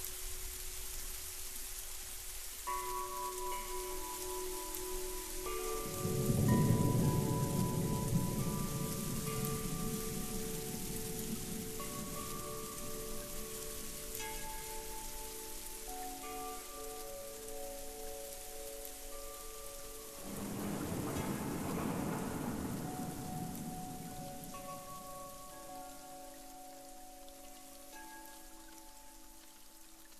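Slow ambient music of sustained melodic notes over a steady rain hiss, with low rolling thunder swelling in about six seconds in and again about twenty seconds in. The whole mix fades gradually near the end.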